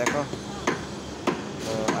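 Hammer blows on formwork, sharp separate knocks roughly every half second to second.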